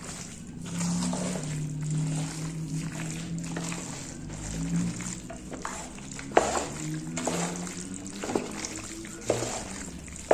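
Wet, squelching stirring of a creamy tuna-and-macaroni salad with a wooden spoon in a large metal pot, with a few sharp knocks of the spoon against the pot in the second half. Background music with low held notes plays underneath.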